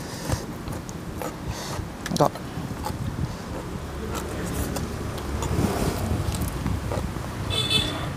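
A low rumble like a road vehicle going by, swelling through the middle and easing off near the end, with small clicky eating noises as a leafy vegetable stalk is bitten and chewed. A brief high-pitched tone sounds near the end.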